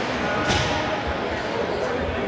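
Ice hockey rink ambience: indistinct voices of spectators in a large echoing arena, with one sharp crack of an impact about half a second in.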